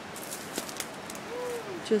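Steady rush of river water, with a few faint ticks in the first second.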